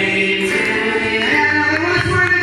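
Music with a group of voices singing long held notes, like a choir, the notes changing in steps.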